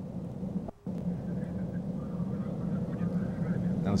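Proton rocket's first-stage engines rumbling steadily as the rocket climbs. The sound cuts out briefly just under a second in, then carries on.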